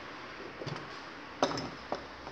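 A few light metallic clicks of a steel tool against an aluminium engine casing, as a rod is slid in to lock the engine. The clearest clicks come about halfway through and near the end, over a low room background.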